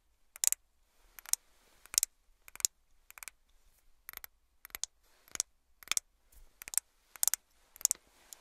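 Fingernails tapping on a bottle of liquid foundation: crisp, separate clicks at an uneven pace, about two a second, some coming in quick pairs.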